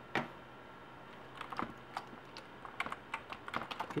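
Typing on a computer keyboard: a single keystroke just after the start, then a run of irregular key clicks from about a second and a half in, coming faster toward the end.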